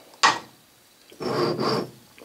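A knock, then a scraping rub lasting most of a second: aluminium mold blocks handled and slid across a wooden workbench.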